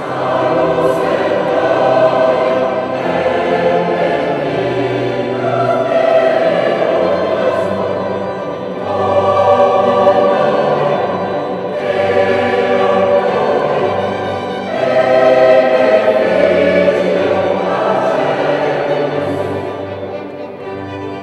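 Large mixed amateur choir singing with string orchestra accompaniment, coming in at full volume at the start and moving in phrases of a few seconds, with short dips between them.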